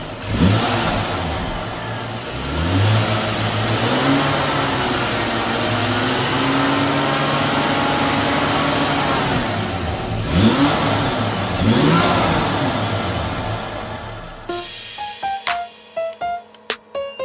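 BMW N55 3.0-litre turbocharged inline-six, warmed up to operating temperature, revved from idle several times: a quick blip, then revs raised and held higher for several seconds, then two sharp blips, dropping back toward idle.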